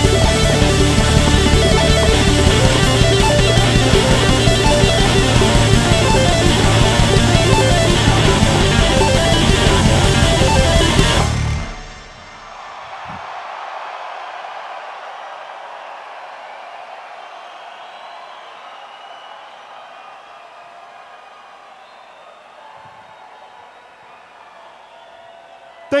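A live band playing loud instrumental electronic rock with drums, which stops abruptly about eleven seconds in as the song ends. A crowd cheering and applauding follows and slowly fades.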